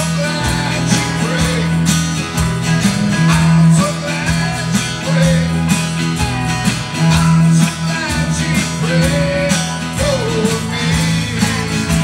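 Live band playing amplified country-style gospel music: electric and acoustic guitars over a steady bass line and drum kit.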